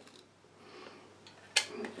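Near silence, then a single sharp click about three-quarters of the way through as the inner film chamber of a Kodak Brownie box camera is handled.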